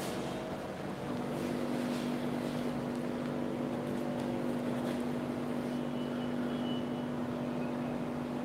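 A steady mechanical hum with a low, unwavering tone and fainter overtones that strengthens about a second in and holds level.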